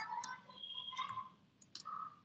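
Computer keyboard keys being typed: a few quiet, separate key clicks.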